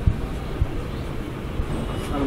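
Marker writing on a whiteboard: a few soft taps of the strokes over a steady rumbling background noise.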